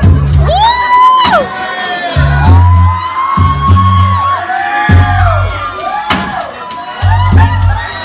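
Dance music with a heavy bass line and a steady beat, starting suddenly and loud.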